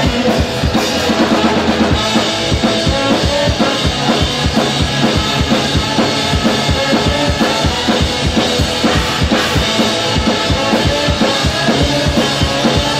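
A live ska-punk rock band playing, with the drum kit to the fore: a fast, steady kick-and-snare beat under electric bass and electric guitars.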